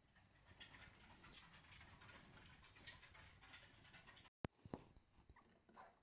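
Faint scrabbling and rustling of degus moving about in their cage bedding. The sound cuts out briefly a little past four seconds, followed by a few light clicks.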